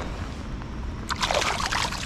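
A small smallmouth bass released back into a shallow creek: a brief splash of water about a second in.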